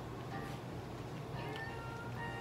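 Toy poodle whining in thin, high, slightly falling tones while being syringe-fed, over a steady low hum.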